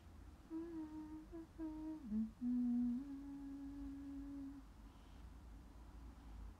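A young woman humming a short tune with her mouth closed: a few short notes, a dip in pitch, then one long held note that stops about four and a half seconds in.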